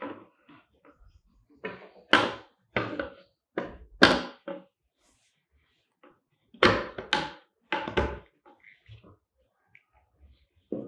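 Wooden panels of a small plywood tunnel model knocking and thudding as they are fitted and pressed together, about a dozen sharp knocks in two irregular clusters with a pause of a couple of seconds between them.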